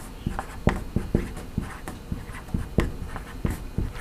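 A string of small, irregular clicks and taps, about three a second, over faint low room noise.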